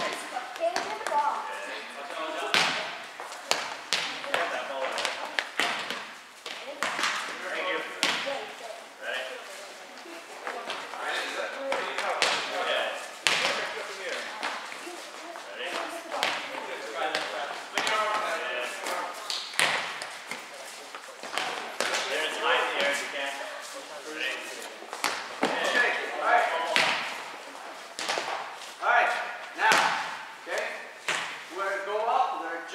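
Volleyballs being spiked and hitting the gym floor: repeated sharp smacks at irregular intervals, about one every second or two, in a large gym, with players' voices in between.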